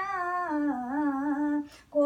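An elderly woman's solo voice, unaccompanied, singing a devotional song. She holds one long, gently wavering note and breaks off briefly near the end.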